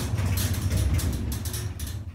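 Hyundai freight elevator car travelling down and coming to a stop at the floor: a steady low rumble from the moving car, with scattered clicks and rattles.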